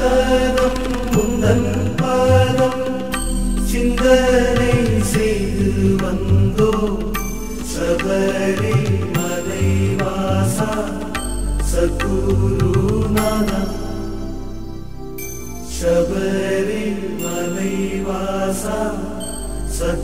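Tamil Hindu devotional song to Ayyappan: chant-like melody over Indian percussion whose low drum strokes bend in pitch. It goes briefly softer about two-thirds of the way in.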